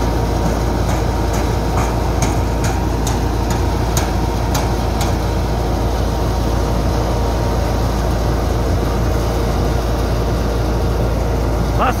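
Belt-driven wheat thresher running under load from a Massey Ferguson 260 tractor as wheat sheaves are fed into its drum, a loud steady drone. A quick run of sharp clicks sounds between about one and five seconds in.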